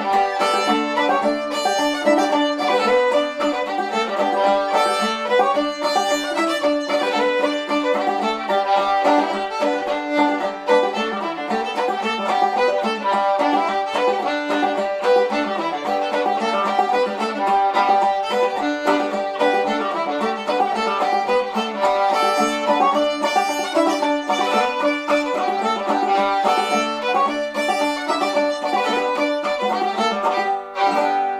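Old-time fiddle tune played on the fiddle, with banjo accompaniment.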